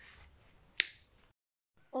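A single sharp finger snap about a second in, then the sound drops out completely for a moment.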